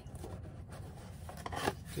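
Hands handling a small display stand: rubbing and scraping, with a few light clicks after about a second and a half.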